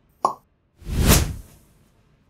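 Animated subscribe-button sound effects: a short pop about a quarter second in, as the cursor clicks the bell, then a whoosh that swells and fades about a second in.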